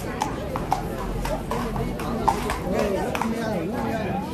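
Horse's hooves clip-clopping at an irregular pace on hard ground as the horse turns around in place, over the chatter of onlookers.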